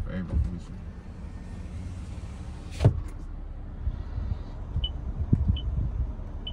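Power rear window of a 2023 Toyota Tundra moving with a steady electric-motor hum, stopping with a sharp thunk about three seconds in. Later, two short high beeps come from the dashboard touchscreen as it is pressed.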